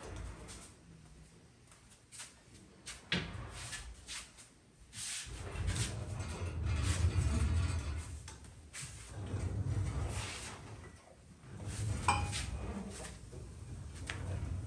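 Heavy wheeled steel tool chests being rolled on their casters, with runs of low rumbling broken by sharp knocks and clunks, one about three seconds in and another near the end. The chests are being slid in and out under the workbench.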